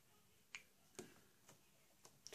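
Near silence broken by three faint, short clicks about half a second apart, from fingers tapping and pressing a smartphone.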